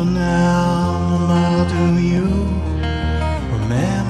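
Acoustic guitar playing with a wordless male vocal that slides up into a long held note, twice.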